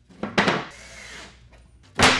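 Plywood shelf being slid into a wooden 2x4 frame, scraping wood on wood: two loud scrapes about a quarter and half a second in, quieter rubbing after, and another loud scrape at the end.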